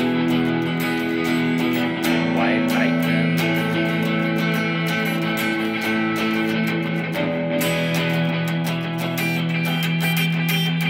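Electric guitar playing an instrumental passage of a song: held notes and chords over a steady low note, with quick, even picking strokes.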